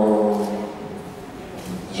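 A man's voice drawing out a steady hesitation sound for about half a second, then a short pause, then speech starting again near the end.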